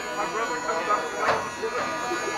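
People talking over a steady, high-pitched electric buzz.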